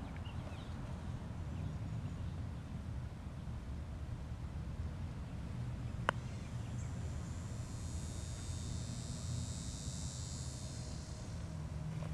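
A single sharp click about halfway through: a TaylorMade Daddy Long Legs putter striking a golf ball. Under it is low, steady outdoor rumble. Just after the putt, insects start a high, steady buzz that fades near the end.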